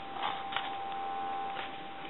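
A faint steady tone from the just-answered telephone handset, with a single handling click about half a second in; the tone cuts off near the end.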